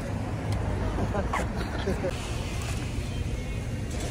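Steady low rumble of a car, with faint, indistinct voices over it.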